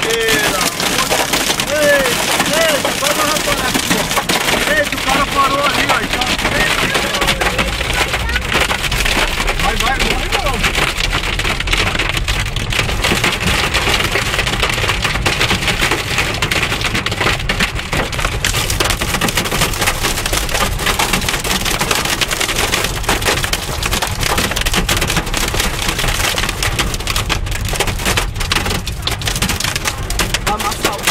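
Hail and heavy rain pelting the car's roof and windshield, heard from inside the car: a loud, dense, unbroken clatter of many small hits.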